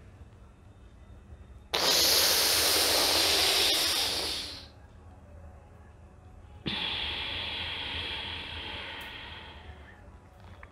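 A woman drawing a long, loud hissing breath in through clenched teeth, the cooling pranayama breath of sheetali/sitkari. It starts sharply about two seconds in and lasts about three seconds. About seven seconds in a second, quieter hiss of breath follows and slowly fades.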